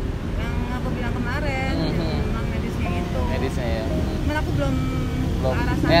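Voices in conversation, too indistinct to make out, over a steady low rumble of motor vehicles.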